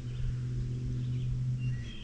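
Outdoor background noise: a steady low hum, with faint high chirping tones near the end.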